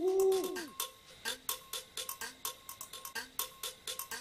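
An owl hoot sound effect: one two-note call that glides down at its end, in the first second. It is followed by a fast, even run of light clicks with short low pips.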